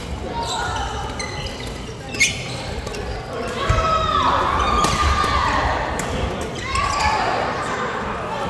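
Busy badminton hall: echoing voices, squeaks of shoes on the wooden court floor, and a few sharp hits, the loudest about two seconds in.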